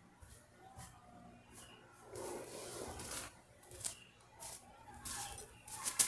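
Faint handling noise: scattered small clicks and rustling as the winch's power cables and packaging are moved about, with a longer rustle about two seconds in and more near the end. The winch motor is not running.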